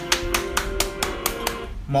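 A person clapping hands quickly, about seven claps at roughly four a second, stopping about a second and a half in, over background music with sustained notes.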